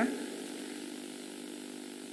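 Room tone: a steady hum with hiss, even throughout, with no distinct events.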